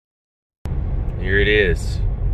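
Silence for about half a second, then the low, steady rumble of road and tyre noise inside a moving Tesla Model 3 Performance begins suddenly. A brief voice is heard over it about a second in.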